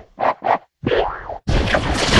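Distorted, pitch-shifted cartoon logo sound effects: two short boing-like sounds in quick succession, a brief silence, a longer gliding sound, then a loud, harsh, crackling burst of noise from about one and a half seconds in.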